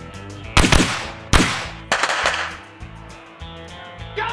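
A string of gunshots, about five in the first two and a half seconds, the first two the loudest, each ringing out with an echo, over background music.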